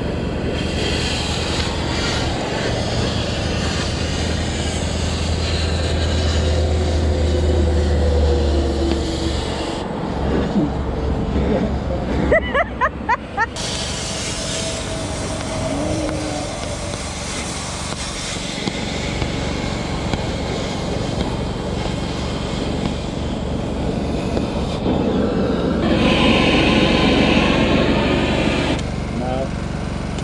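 Oxy-fuel cutting torch running steadily as it cuts through steel plate, with a low hum in the first several seconds and a few brief chirps about twelve seconds in.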